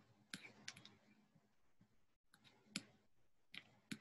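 Near silence broken by a handful of faint, irregular clicks: several in the first second, then a few more spaced out towards the end.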